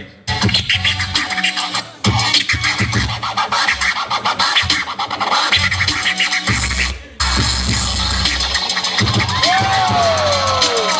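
A DJ scratching records on turntables over a beat, played loud through the PA. The music cuts out abruptly for a moment three times: at the start, about two seconds in, and about seven seconds in.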